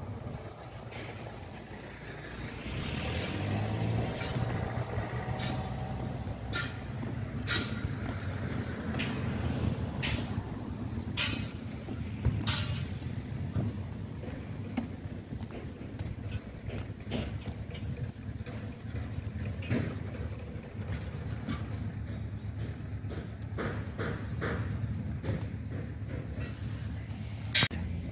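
Steady low engine rumble of motor vehicles, louder for a stretch about three to five seconds in, with scattered sharp clicks and knocks throughout.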